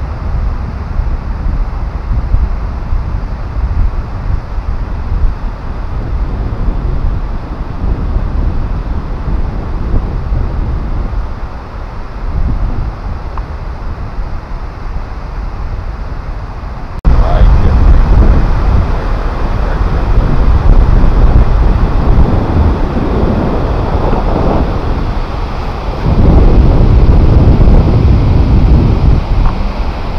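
Wind buffeting a GoPro Hero 4 Silver's microphone: a heavy, continuous low rumble that gets suddenly louder about halfway through and again near the end.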